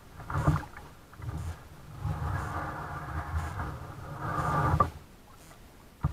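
Kayak being paddled on a river: paddle strokes and water noise against the hull. A longer wash begins about two seconds in, grows louder, and stops suddenly just before five seconds.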